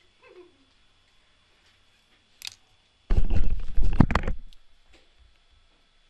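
A loud burst of close rustling and knocking, about a second and a half long, past the middle, after a single click. A brief faint voice sound comes near the start.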